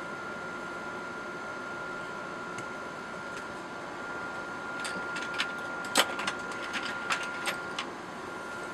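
Small metal air-rifle parts being handled on a wooden bench: a string of short, sharp clicks and taps, starting about five seconds in, the loudest one near six seconds. Under them a steady room hum with a faint high tone.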